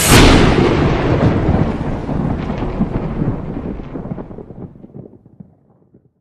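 Cinematic boom sound effect for a logo reveal: one sudden deep hit where the music stops, then a crackling rumble that fades out over about five seconds.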